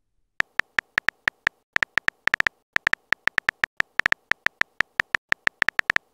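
Phone on-screen keyboard typing sounds from a texting-story app: a fast, uneven run of short identical ticks, about six a second with a few brief pauses, one per letter typed.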